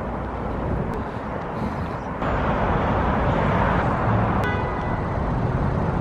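Steady road traffic noise, a low rumble that grows louder about two seconds in, with a brief pitched tone about four and a half seconds in.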